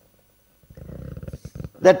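A person's voice, faint and rough, lasting about a second, with no clear pitch.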